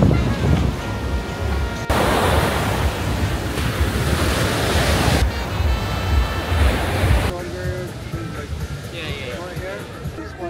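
Sea surf breaking and rushing on a sandy beach, loudest as a full hiss from about two to five seconds in, under background music with steady tones. Around seven seconds in the surf drops away and the music, with voices, carries on.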